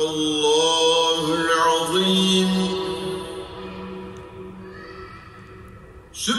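A man chanting a Quran recitation, one long, drawn-out melodic phrase with ornamented turns in the pitch. It is loudest at first and fades away over the last few seconds.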